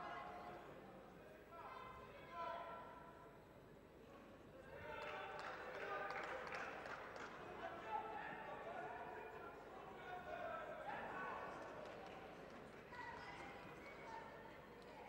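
Coaches and spectators shouting in a large sports hall, in several spells, with occasional thuds from the judoka's feet and bodies on the tatami.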